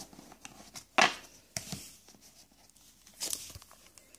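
Pokémon trading cards and a foil booster pack being handled: a few short rustles and taps, the loudest about a second in.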